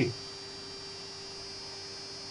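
Steady electrical hum with a thin high whine from a running back-EMF transistor oscillator setup, unchanging throughout.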